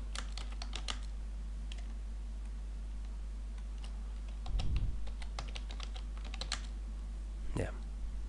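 Computer keyboard keys clicking as a word is typed, in two short runs of keystrokes: one in the first second and another from about four and a half to six and a half seconds in. A steady low hum lies underneath.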